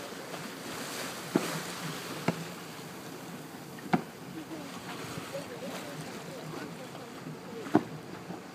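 Steady wash of wind and sea on an open boat at sea, with faint voices in the background and four sharp clicks or knocks spread through it, the loudest near the end.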